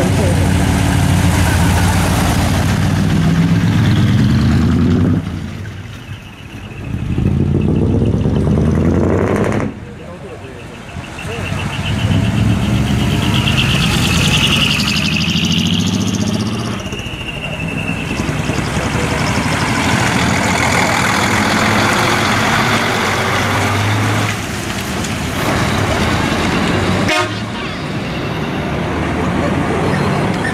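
Heavy diesel trucks, decorated Hino and Mitsubishi Fuso rigs, drive slowly past one after another, engines running with rises and dips as each one passes. A high horn tone sounds for a few seconds midway.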